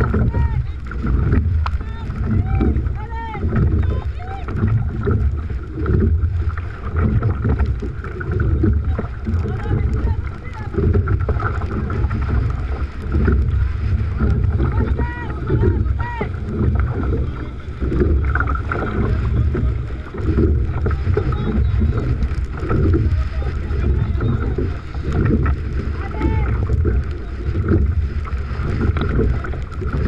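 Heavy wind buffeting the microphone over a coastal rowing boat under oars in choppy water, the sound swelling about every two seconds in time with the rowing stroke.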